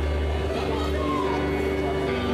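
Live band playing: electric guitar and bass hold a long chord over a deep, sustained bass note.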